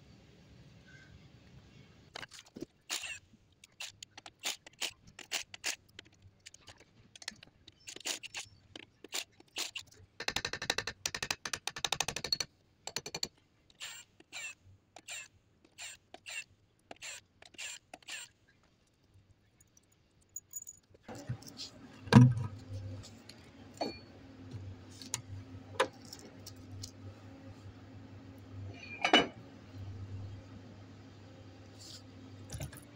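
Cordless impact wrench rattling off the axle-shaft flange nuts on a truck's rear hub, in short bursts with one longer run of rapid hammering. Metal clinks and knocks come from the loose nuts and tools, with a sharp loud knock later on.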